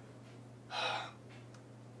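A man's audible breath, one short intake of air near the middle, over a faint steady low hum.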